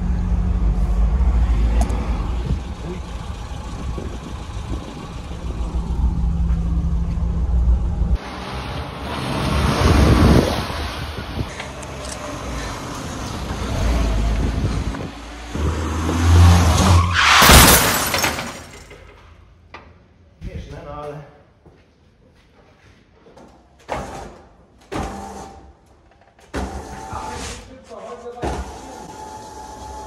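FSO 125p 1500 Combi's four-cylinder engine running as the car drives slowly, at first a steady low drone, then louder and noisier passages, the loudest about halfway through. In the last third there are only short, broken sounds.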